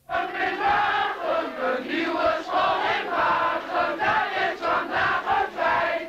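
A large crowd of children's voices raised together, singing or chanting in a steady, regular rhythm.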